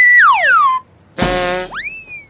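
Cartoon-style comedy sound effects. A high whistle-like tone holds briefly and then slides down in pitch. After a short gap, a burst is followed by a quick upward swoop that tails off slowly downward.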